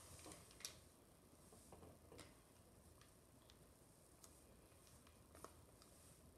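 Near silence with a few faint, scattered clicks and light taps, the sharpest under a second in, from hands working in a plastic glue bowl and handling glue-soaked paper strips.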